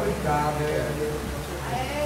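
Faint, wavering human voices in a pause between louder shouting, over a steady low hum.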